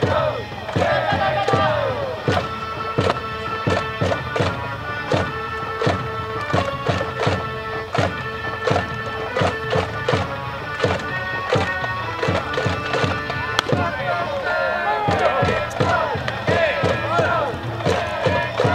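A baseball cheering section performing a batter's fight song: fans sing over a steady drumbeat of about two beats a second, with long held instrument notes through the middle.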